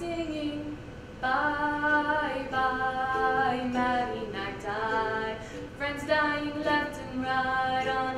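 A woman singing a slow melody in long, held notes, with a few light strums on a ukulele.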